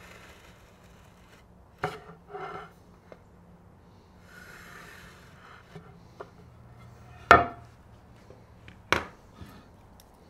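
A curly teak board and hand tools handled on a wooden workbench while the wood is marked out: a few sharp wooden knocks, the loudest about seven seconds in and another about nine seconds in, with short scratchy rubbing sounds in between.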